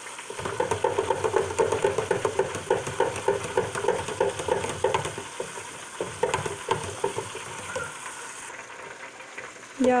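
Breaded salmon deep-frying in hot oil in an electric deep fryer's basket, a dense crackling sizzle that thins out and grows quieter after about six seconds.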